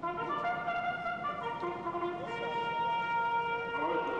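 Brass music with trumpets: several long held notes sound together and shift in pitch now and then.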